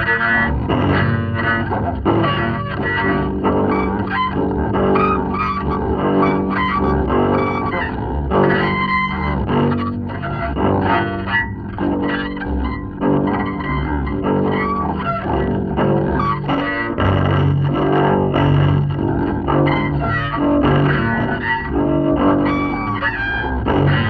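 Solo double bass in free improvisation: a busy, unbroken stream of notes rich in high overtones.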